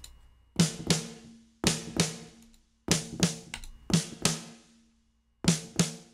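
A sampled acoustic drum kit from Superior Drummer 3 plays five pairs of sharp hits, spaced about a second apart. Each hit carries a short room-reverb tail from Seventh Heaven that gives the bone-dry sample a little space and liveliness.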